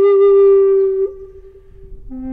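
Flute intro music: one long held note that drops away sharply about a second in, leaving a faint fading tail.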